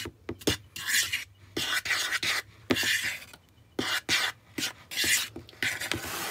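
Metal fork stirring dry flour, baking soda and salt in a bowl: a run of short scraping strokes with light clicks of the fork against the bowl, about two or three a second, pausing briefly midway.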